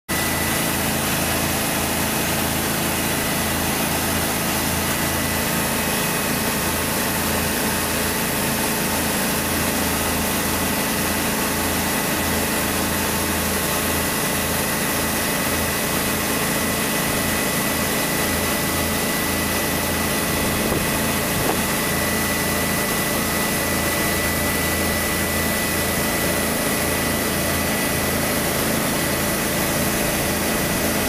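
Motorboat engine running steadily under way at speed, with the rush of water from the hull and wake.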